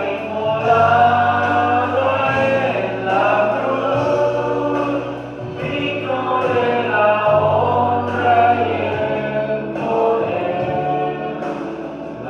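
A man singing a slow song into a handheld microphone, amplified over a sound system. His melody moves in long held notes over a steady low accompaniment.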